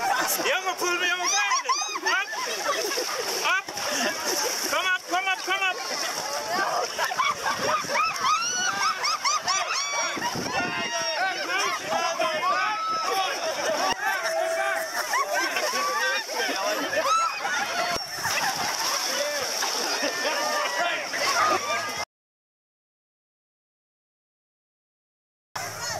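A crowd of people chattering and talking over one another, many voices at once, over a steady high hiss. The sound cuts off abruptly into silence near the end.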